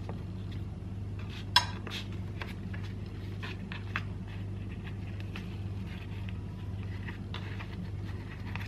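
Quiet handling of a metal spoon and thin yufka pastry on a wooden cutting board: a sharp clink about one and a half seconds in as the spoon goes back into the china bowl of filling, then small ticks and faint papery rustles as the pastry is folded, over a steady low hum.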